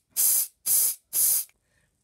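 Aerosol deodorant can sprayed in three short bursts of hiss, each about half a second, stopping about a second and a half in.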